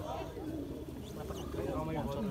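Distant, overlapping men's voices calling out across an open field, with no clear words and no single loud event.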